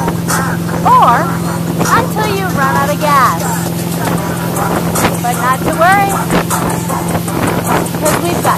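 Towboat engine running steadily under load as it pulls a wakeboarder, with voices calling out over the drone.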